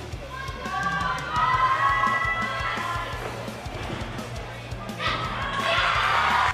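Background music with a steady bass line under gymnasium sound, with high-pitched voices early on; about five seconds in, spectators burst into cheering and shouting as the vault is landed.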